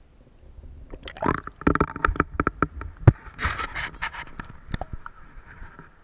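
Water sloshing and gurgling around a camera as it is raised out of the river, with a run of irregular knocks and splashes starting about a second in and easing off near the end.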